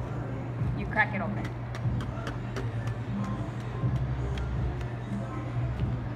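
A spoon tapping and breaking into a meringue dessert: a run of light, sharp clicks at irregular intervals, over a steady low hum.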